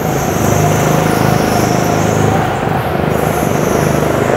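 A 9 PS rental go-kart's engine running steadily under throttle, heard from the driver's seat.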